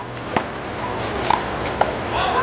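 A small rubber handball smacking off the hand, the concrete wall and the court during a one-wall handball rally: three sharp hits, about half a second to a second apart.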